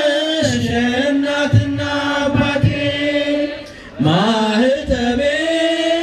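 Ethiopian Orthodox hymn chanted by a group of voices, in long held notes that glide slowly up and down. The voices break off briefly about four seconds in, then resume on a rising note. Low thumps sound under the chant.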